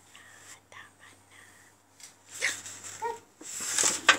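Soft whispering and breathy voice sounds close to the microphone, loudest near the end, with a short high-pitched baby vocal sound about three seconds in.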